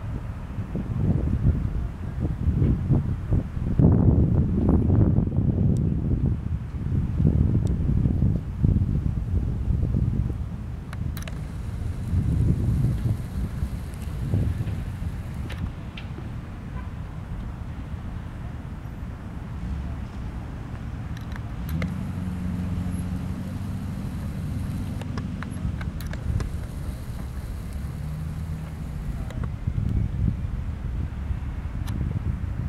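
Wind buffets the microphone in gusts for about the first ten seconds. Then comes the low, steady hum of the boat's twin 225 hp outboard motors running at low speed, with a steadier engine tone through the last several seconds.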